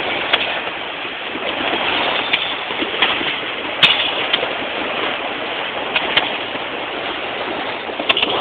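Firecrackers and fireworks going off all around on New Year's Eve: a continuous crackling din, with several sharper single bangs standing out. The loudest comes about four seconds in.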